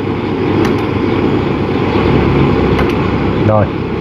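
Gas torch flame burning steadily on a cracked aluminium fan part while a stick welder's electrode is held on the crack to heat it for the weld: a steady rushing noise that eases slightly near the end.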